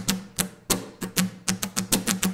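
Acoustic guitar strummed on muted strings: a quick, percussive rhythm of down and up strokes, several a second.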